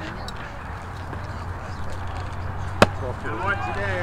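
A single sharp crack of a baseball impact about three-quarters of the way through, followed at once by voices of players and spectators starting up.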